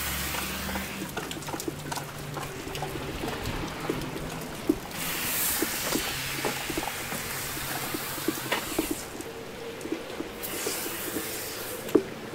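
A handheld sprayer hissing in bursts as iron-remover foam is sprayed onto a tractor's paint and wheels: once at the start, again about five seconds in and near the end. Between the bursts there is a steady wet hiss with scattered small drips and taps, and a faint low hum underneath.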